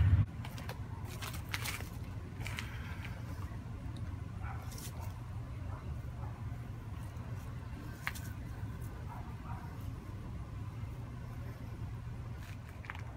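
Steady low rumble of road-paving machinery working in the background, with a few faint clicks and rustles of jute twine being wrapped around a wooden axe handle.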